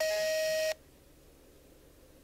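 A telephone call tone through the phone's speaker: one steady, buzzy beep about three quarters of a second long, then quiet room tone.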